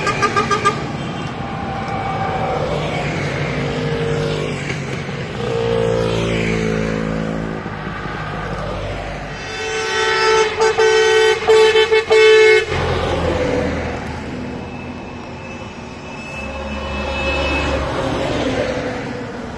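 Buses and trucks driving past one after another, their engines rising and fading as each goes by. A horn gives short toots right at the start, and about ten seconds in a vehicle horn honks in a quick series of short blasts for a couple of seconds, the loudest sound. A heavy truck's engine rumbles in close near the end.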